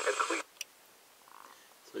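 Hissy, static-laden weather-band broadcast voice playing from the CB radio's speaker. It cuts off suddenly about half a second in as the radio is switched from weather to PA mode, followed by a single click.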